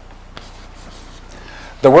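Chalk on a blackboard: faint scratching with a light tap during a pause, then a man's voice starts near the end.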